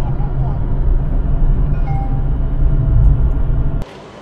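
Steady low road and tyre rumble with wind noise inside the cabin of a VinFast VF3 electric car cruising on an expressway, with no engine note. It cuts off abruptly near the end.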